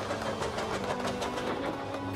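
Film sound of a steam locomotive racing at speed: rapid chuffing and wheel clatter in a fast, even rhythm, with orchestral music underneath.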